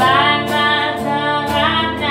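A woman singing long held notes with a wavering pitch, live, over a strummed guitar accompaniment.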